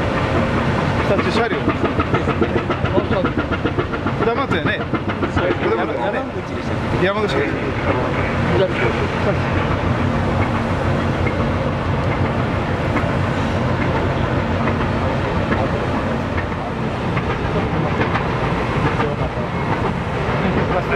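Cargo ship's diesel engine running steadily, a low hum with a busy rattling clatter over it.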